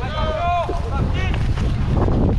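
Wind buffeting a rider-mounted camera's microphone as a pony gallops, a steady low rumble, with a short high-pitched shouted call in the first second and a brief second one a little after.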